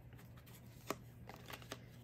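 Faint handling of a deck of tarot cards, with one sharp card snap just under a second in and a few lighter ticks after it.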